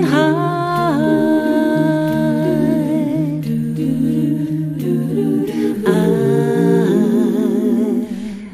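Background music: a cappella singing, a lead voice holding long, wavering notes over sustained humming harmony voices that shift chords every second or two.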